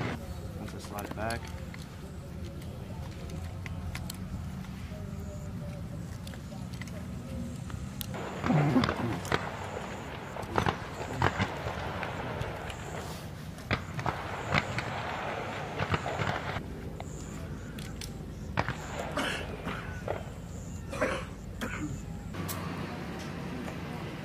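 Indistinct voices over a steady outdoor background, with scattered sharp clicks and clacks of rifles being handled in dry-fire drills.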